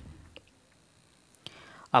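A short pause in a man's speech: quiet room tone with a couple of faint mouth clicks, and a soft breath before he speaks again.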